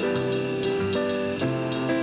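Live acoustic jazz: a grand piano playing held chords that change every half second or so, over a low bass note.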